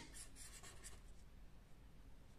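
Marker pen writing on paper: faint strokes, strongest in the first half second.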